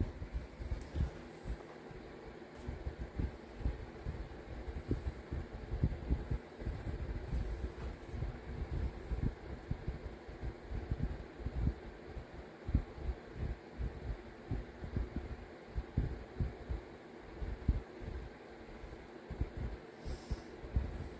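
A double-cut carbide burr pressed and rolled by hand over a modelling-clay dome on a paper pad: faint, irregular, dull low bumps and rubbing.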